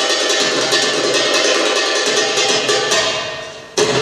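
Egyptian shaabi dance music with percussion. Near the end it fades down for under a second, then cuts back in suddenly at full level.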